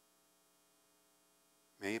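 Faint, steady electrical mains hum with no other sound, until a man's voice begins speaking near the end.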